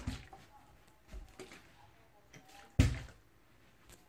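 Plastic water bottle, partly filled, thrown in a bottle flip and landing with one loud thud on the carpeted floor about three seconds in, after a couple of softer knocks.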